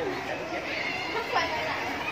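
Background chatter of several people's voices, too indistinct to make out words.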